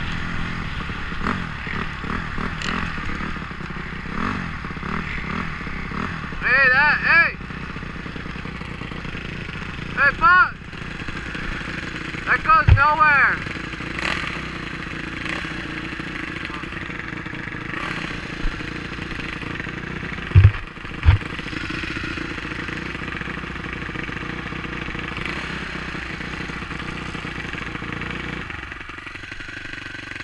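Off-road dirt bike engine running steadily under the rider as it travels a rough dirt trail, with wind on the helmet microphone. There are two sharp thumps about two-thirds of the way through, and near the end the engine sound drops away as the bike comes to a stop.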